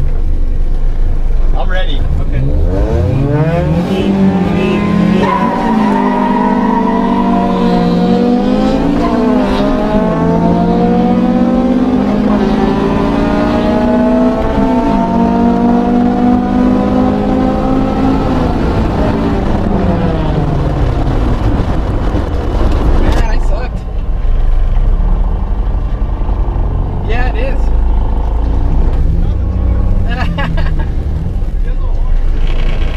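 Honda four-cylinder engine accelerating hard at full throttle, its pitch climbing through the gears with shifts about nine and fourteen seconds in, then falling away as the car lifts off and slows about twenty seconds in. Wind and road noise follow.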